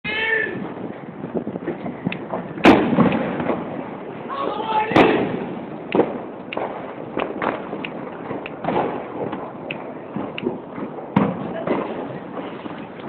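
Firecrackers and fireworks going off all around: two loud sharp bangs, one about a third of the way in and one near the middle, among many smaller pops, over a steady background din. Voices call out at the start and again shortly before the middle.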